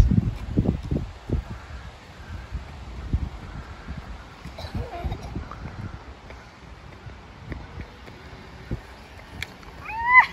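Gusty low rumble of wind on the microphone, with a few faint, brief higher sounds near the middle.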